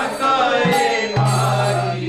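Devotional bhajan: a voice singing over a mridanga, the double-headed clay barrel drum of kirtan, played with sharp high strokes. Just past halfway, a deep bass stroke on the drum's left head rings on for most of a second.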